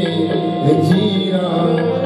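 Sikh kirtan music: harmoniums sounding steady reed chords over tabla drumming.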